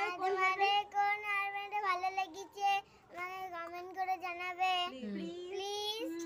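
A young girl singing a short tune in two phrases, holding long, steady notes, with a brief pause about three seconds in.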